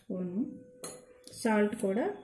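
Metal spoons clinking against a stainless steel mixing bowl and small spice bowls as spice powders are scooped and added, with one sharp clink about a second in. A voice talks over it at the start and near the end.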